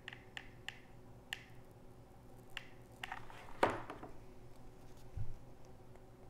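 Faint clicks and taps of hands working a hot glue gun and small foam-board pieces on a wooden board, with one louder knock about three and a half seconds in.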